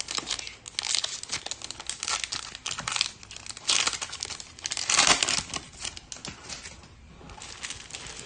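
The wrapper of a football trading card pack being torn open and crinkled by hand, in a run of sharp crackling bursts. It is loudest about five seconds in and quietens after about six seconds.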